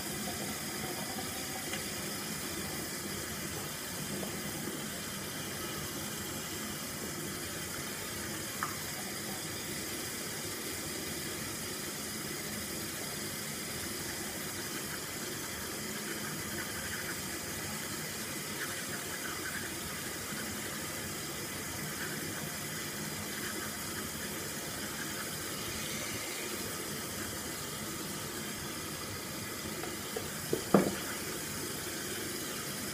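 Bathroom tap running steadily into the sink, with faint toothbrush scrubbing in the middle and one short click about a third of the way through.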